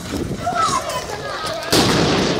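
A single loud bang from a riot-control munition near the end, sudden and fading over about half a second, with voices shouting before it.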